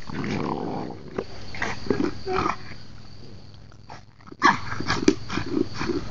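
French bulldog growling and grunting as it noses and shoves a food bowl around on grass, with repeated light knocks and scrapes of the bowl. There is a brief lull about four seconds in.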